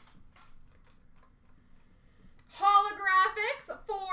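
Faint handling of trading cards for about two and a half seconds, then a person starts speaking.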